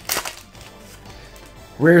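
Foil trading-card booster pack wrapper crackling briefly as it is handled and torn open near the start, followed by a quiet stretch.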